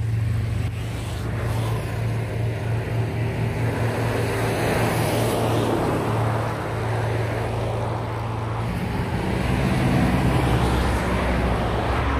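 Kawasaki Versys 650 parallel-twin motorcycle engine running at a steady cruise under wind and road noise. Its note changes and grows a little louder about nine seconds in.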